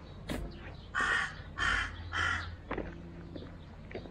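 A crow cawing three times in quick succession, harsh calls about half a second apart, starting about a second in.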